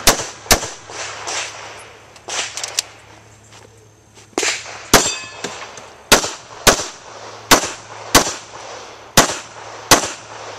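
Handgun fired at a practical-shooting stage: about ten sharp cracks, mostly in quick pairs about half a second apart, with a gap of a few seconds after the first pair. Fainter pops sound between the loud shots.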